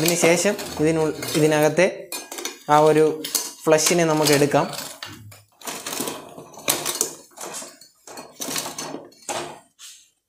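Steel ladle and spoon clinking and scraping against an aluminium pot as a whole oyster in its shell is turned in shallow water, with a string of separate clinks through the second half. A voice is heard over the first half.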